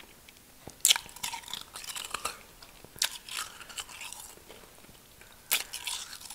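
Biting into and chewing packed real snow from a snowball, close to the mouth: three sharp crunching bites, about a second in, at about three seconds and near the end, each followed by softer crunchy chewing.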